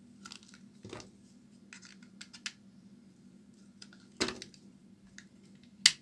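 A snap-off utility knife blade cutting into a bar of dry white soap: a run of short, crisp scraping cuts, with a louder cut about four seconds in and the sharpest, loudest crack just before the end.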